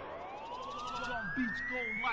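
Breakdown in a hard electronic dance track: the drums are out and a single synth tone sweeps slowly upward in pitch, siren-like. A few short, falling electronic blips join it in the second half.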